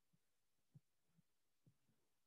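Near silence: room tone, with about three faint, short low thumps.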